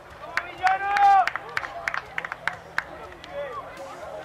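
Field sound from a rugby pitch: a player's voice gives one long, loud shout about a second in, with a shorter call later. Scattered sharp clicks run through it.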